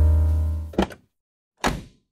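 Edited intro music: a deep, bass-heavy piano chord rings and fades, ended by a short sharp hit a little under a second in. After a gap of silence, one more brief hit sounds near the end.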